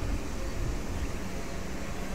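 A US Air Force C-130J Super Hercules's four Rolls-Royce AE 2100D3 turboprops running as it taxis, a steady low rumbling drone.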